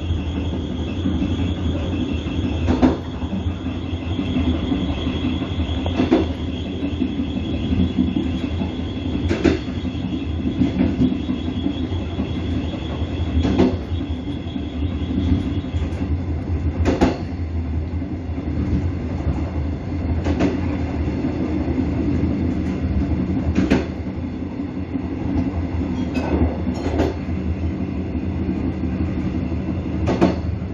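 Train wheels running on track: a steady low rumble, with a sharp click about every three seconds. A thin high squeal runs through the first half and fades out about halfway.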